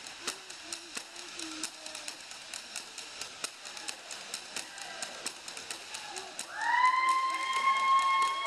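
Drumsticks tapping on school desks in a steady rhythm, about four hits a second. About six and a half seconds in, a loud high tone rises in and is held.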